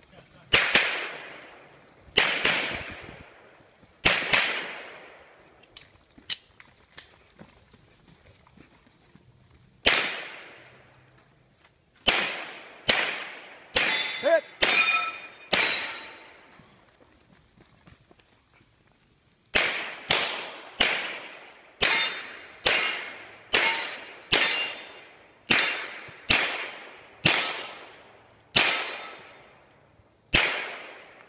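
Handgun shots in a 3-gun match stage, each with a long echoing tail, some hits followed by the faint ring of steel targets. Three shots come a couple of seconds apart, then a pause. A cluster of about seven follows, then another pause, then a steady string of more than a dozen shots a little under a second apart near the end.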